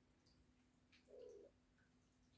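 A near-quiet room with one brief, soft, low-pitched animal call about a second in, lasting under half a second. Under it are a faint steady hum and a few faint high ticks.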